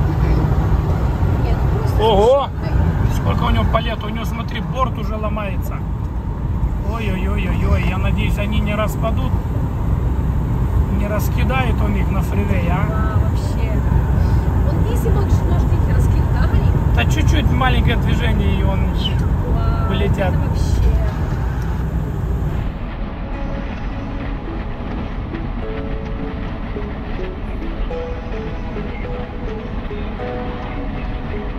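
Steady low road rumble inside a vehicle cruising at highway speed, with a voice over it. About three-quarters of the way through it drops to a quieter, even driving noise.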